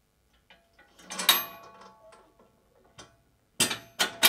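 Steel rigging hardware of a d&b XSL loudspeaker array, with the rear link being released and pinned to the adapter frame: a few light clicks and two metallic clanks that ring briefly, about a second in and near the end.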